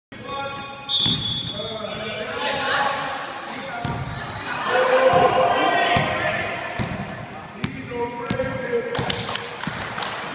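A basketball dribbled on a sports hall floor, a series of irregular bounces, under children's voices and laughter.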